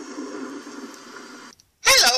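Faint, thin tail of a movie soundtrack fading under the last spoken line, cut off sharply about a second and a half in; after a brief silence a man's voice starts near the end.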